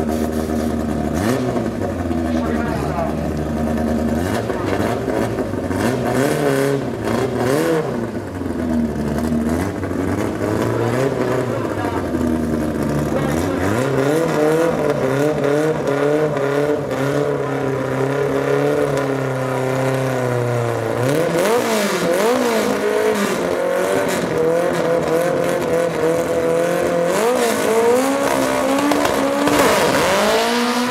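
Engines of two drag-race cars, a Toyota Starlet GT Turbo and a Ford Escort, idling at the start line with repeated throttle blips while they stage, then revving up near the end for the launch.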